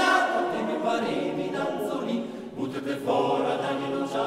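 Male voice choir singing a Trentino mountain folk song a cappella in close harmony. The singing grows softer, breaks for a short breath about two and a half seconds in, then takes up the next phrase.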